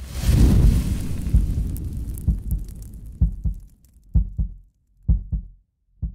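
Logo sting sound effect: a deep boom with a hiss that dies away over about three seconds, then low double thuds like a heartbeat, about one pair a second.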